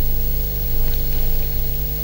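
Steady electrical mains hum with hiss: a low buzz with a few fixed tones and no speech, heard over a remote video-call audio feed.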